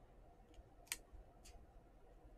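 Near silence with three faint clicks of trading cards being handled, the clearest about a second in.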